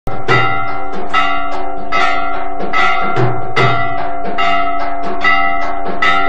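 Temple aarti percussion: ringing metal bells struck in a steady rhythm of about two or three strokes a second, each stroke leaving a held ring, with occasional deep drum beats underneath.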